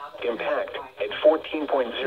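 Only speech: a voice reading a flood warning over a radio, with thin, narrow sound.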